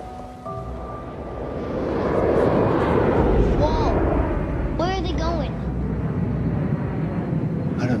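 A crowd of voices swells into cheering and whooping about two seconds in, with a few loud rising-and-falling whoops later on, over low rumbling trailer music that opens with steady held notes.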